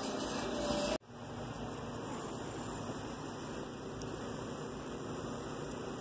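Steady, even hiss of background noise, broken by an abrupt cut about a second in, after which the hiss carries on unchanged.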